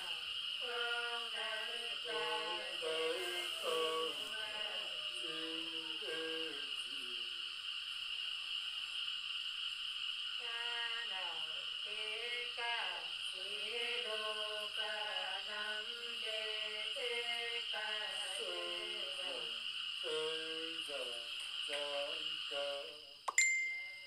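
A woman singing a Nùng folk song: a slow melody with long, wavering held notes and a break of about three seconds near the middle.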